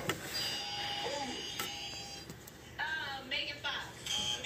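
A child's indistinct voice indoors, heard near the end, after a steady high tone in the first half.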